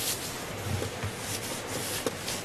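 Irregular rustling and rubbing noises, a run of short scratchy strokes with no speech.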